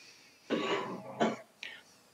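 A man clearing his throat: a rough, rasping sound about half a second in that lasts under a second, followed by a short breathy hiss.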